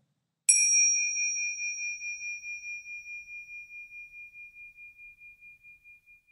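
A meditation chime struck once about half a second in, ringing with one clear high tone that slowly fades with a pulsing waver, about four beats a second. It marks the close of the meditation session.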